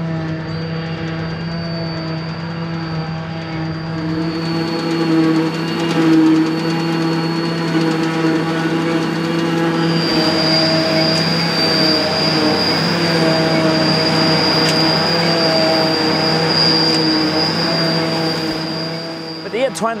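Fendt 820 tractor driving a trailed JF 1100 forage harvester while chopping grass: a steady engine and drum drone with a constant high whine, which steps up slightly about halfway through.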